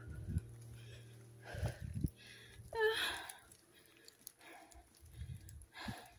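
A hiker's footsteps on a rocky trail and her breathing: a few soft thumps and short breathy puffs, scattered and irregular.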